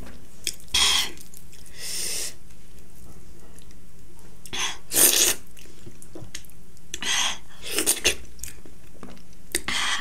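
A person eating by hand close to the microphone: chewing and mouth noises, with about seven short hissy bursts spread through.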